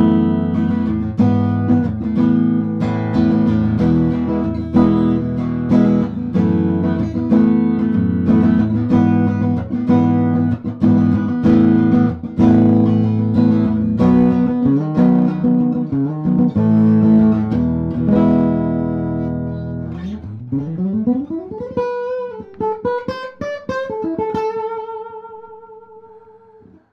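PRS Hollowbody I guitar played clean on its piezo acoustic pickup through a Dr. Z Maz Jr combo amp, giving an acoustic-guitar tone. It strums repeated chords, then about twenty seconds in slides up the neck into a few single notes with vibrato and ends on a held note.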